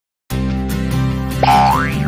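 Upbeat intro jingle that starts suddenly after a brief silence. About one and a half seconds in, a cartoon sound effect sweeps up in pitch over the music.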